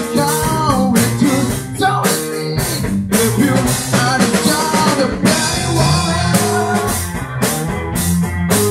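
Live band playing amplified rock: a drum kit keeping a steady beat under bass guitar and electric guitar, with a man singing into a handheld microphone.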